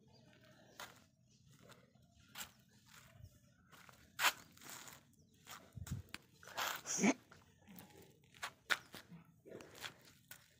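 A dog's claws and paws clicking and scuffing on concrete as it walks and sniffs, in an irregular run of sharp clicks. The loudest come about four and seven seconds in, and a short wavering squeak sits among them around seven seconds.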